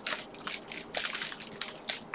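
Foil Pokémon booster pack wrappers crinkling and crackling as they are handled, a string of irregular sharp crackles.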